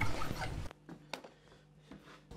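Flat hand file rasping across a bone guitar nut blank clamped in a bench vise for the first moment, then near quiet broken by a single click about a second in.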